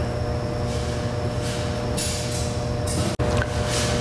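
Steady mechanical hum in a pickup's cab, with a low drone and a few steady higher tones, from the running truck and its ventilation. A single sharp click sounds about three seconds in.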